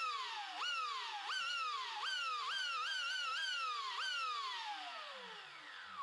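Brushless electric motor of an 8S RC drag car whining up sharply and coasting down as the throttle is blipped about seven times, then winding down slowly over the last two seconds. The motor answers the throttle at once with no launch delay, because the Perfect Pass launch control's full-throttle protection has been cancelled.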